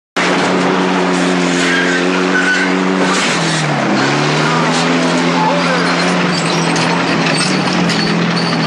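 A tank's engine running with a steady low drone over the clatter and grinding of its tracks, the engine's pitch dipping and climbing back about three seconds in as the tank moves onto an open-topped car.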